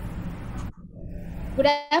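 Steady hiss with a low hum from an open microphone on an online call, cutting off abruptly under a second in. A woman starts speaking near the end.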